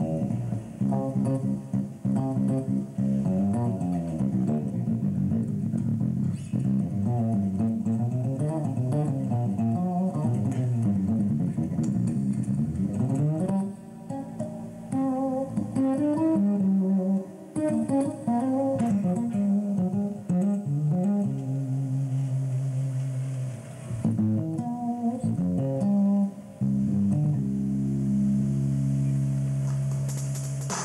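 Solo electric bass guitar played fingerstyle: melodic lines full of sliding, bending notes over low bass notes, ending on a few held low notes near the end.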